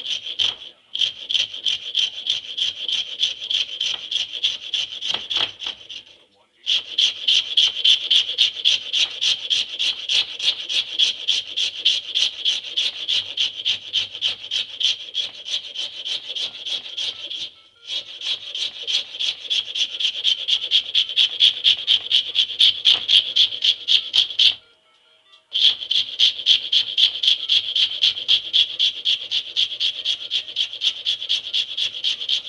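Hand file rasping back and forth across a Burmese blackwood grip blank held in a vise: fast, even strokes, about four a second, with three short pauses.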